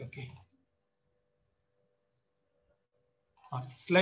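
A man says a short 'okay', then the call audio drops to near silence for about three seconds, with a very faint steady hum, before a man's speech resumes near the end.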